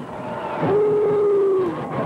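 Marching band brass playing a long held note, about a second long, that drops off in pitch at the end, over a background of stadium crowd noise.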